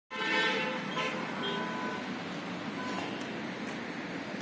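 Vehicle horns honking in road traffic: one longer honk at the start, then a few short toots, over a steady background noise of traffic.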